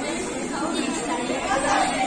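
Chatter: several young women talking over one another in a classroom, with no other sound standing out.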